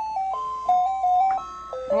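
Simple electronic toy tune from a robotic laser ball's built-in music mode: a single bright melody line stepping from note to note.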